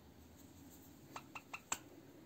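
Four small, faint clicks in quick succession about a second in, the last one the loudest, from a sewing needle and thread being worked between the fingers.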